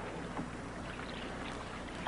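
Faint steady low hum under a light hiss, with a few soft ticks.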